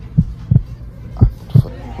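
Heartbeat-like background beat: pairs of deep thumps, the pairs coming about once a second, over a steady low drone.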